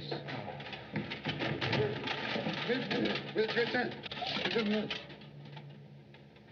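A man's voice muffled by a gas mask, coming out as low, cooing mumbles over a busy rustling. It all fades away about five seconds in.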